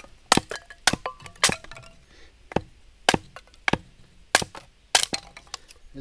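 Small hatchet chopping and splitting kindling sticks on a wooden chopping stump: about nine sharp cracks of blade into wood at an uneven pace.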